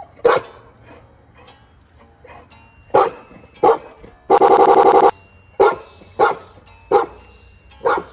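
A dog barking: seven short, loud barks at irregular intervals, with one longer, rapidly pulsing call about midway.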